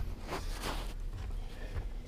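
Soft scraping and scuffing of a hand digging tool working loose soil, a few faint scrapes over a low steady rumble.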